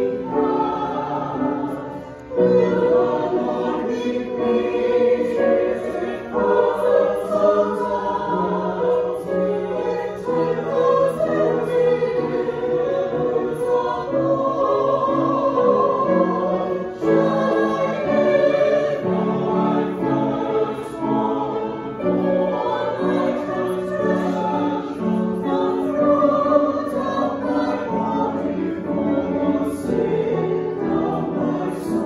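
A small mixed choir of men's and women's voices singing a sacred anthem in parts, with piano accompaniment. The singing is continuous, with short breaks between phrases about two seconds in and again just past halfway.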